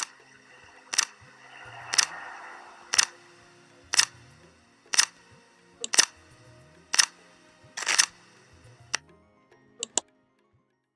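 Countdown timer sound effect: a sharp tick about once a second, one per number, over faint background music.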